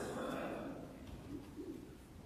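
Rustling and shuffling of robed clergy and choir getting to their feet in a stone church, loudest at the start and dying away within about a second. A faint low voice-like sound follows near the end.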